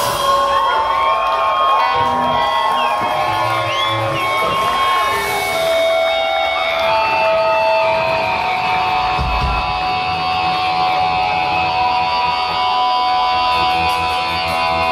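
Loud live hardcore punk band with amplified electric guitars holding long sustained notes and feedback tones and only scattered drum thumps, while the crowd shouts and whoops over it.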